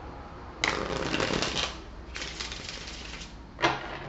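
A deck of tarot cards shuffled by hand: two stretches of rapid card flicking, each about a second long, then a single sharp knock near the end.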